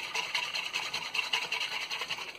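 Red-coated wire whisk beating powdered egg mix into cold water in a plastic mixing bowl: a quick, steady wet swishing of repeated strokes.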